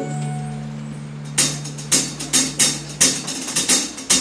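Live band music: a held low note hangs and fades, then about a second and a half in the drum kit comes in with a quick, syncopated run of sharp strikes.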